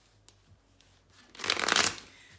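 A tarot deck being shuffled: a few faint clicks of cards being handled, then a loud, quick flutter of cards lasting about half a second near the end.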